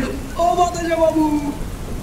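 Steady rain, with one long, drawn-out voiced cry about half a second in that lasts about a second and sags slightly in pitch.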